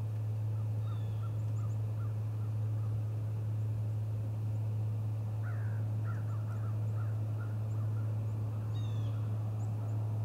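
A steady low hum throughout, with short bird calls and chirps scattered over it and a quick run of several calls a little past the middle.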